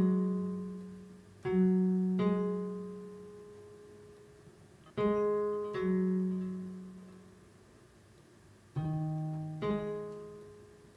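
Sampled clean electric guitar from the Guitars in Space Kontakt library's plectrum patch, played as three pairs of plucked notes, each pair a little under a second apart. Each note starts sharply and rings out, fading slowly over a few seconds before the next pair.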